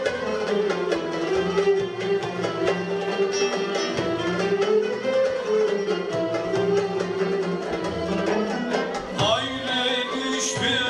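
Live Turkish music ensemble of violins, cello and ouds playing an Azeri folk song, a wavering melody over a steady beat. A new, higher part comes in near the end.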